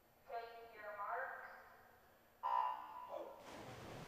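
A starter's voice over the pool PA gives the command to take marks, then the electronic start signal sounds about two and a half seconds in with a sudden steady tone lasting about a second. Splashing from the swimmers diving in follows near the end.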